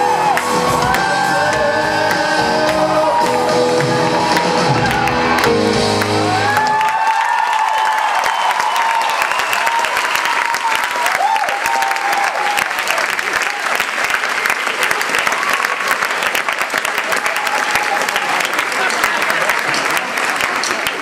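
Live band with singing, ending about seven seconds in. The audience then applauds and cheers, with shouts over the clapping.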